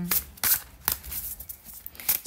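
A deck of tarot cards shuffled overhand by hand: cards sliding and slapping against each other in a few short, crisp strokes about half a second apart.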